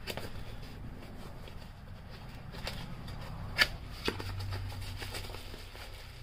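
A small cardboard box being opened by hand and a bubble-wrapped glass item slid out: cardboard and plastic wrap rustling and crinkling, with a sharp click about three and a half seconds in.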